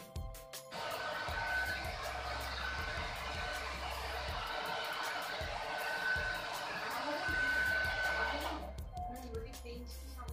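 Handheld Philips hair dryer blowing air on high, a steady rushing hiss with a faint whine from its motor. It starts about a second in and cuts off suddenly about a second and a half before the end.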